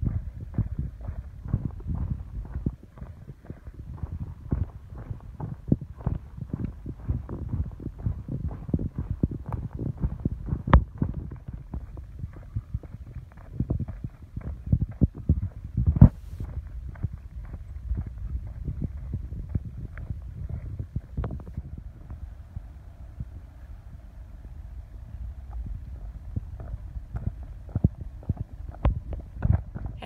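Footsteps on a dirt trail heard through a hand-held camera carried while walking: dense, irregular low thuds and knocks of steps and handling. Two sharper taps stand out, about a third of the way in and just past halfway.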